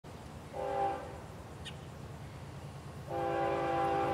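Diesel locomotive air horn sounding a chord of several steady tones: a short blast about half a second in, then a longer blast starting about three seconds in and still sounding at the end, over a low steady hum.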